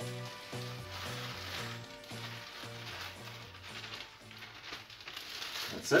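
A faint crackling rustle of butter-soaked biscuit crumbs being tipped from a plastic bag into a tart tin, over light background music with an evenly stepping bass line.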